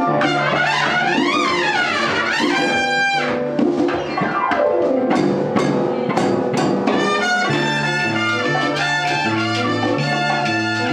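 Live salsa band playing an instrumental, led by its horn section of trumpets and trombones over bass and Latin percussion. Quick runs sweep up and down in the first few seconds, and a new repeating bass figure comes in about seven and a half seconds in.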